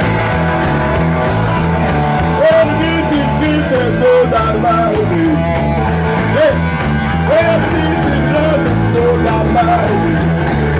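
Garage rock band playing live at full volume: a steady driving groove underneath, with a lead line above it that bends up and down in pitch.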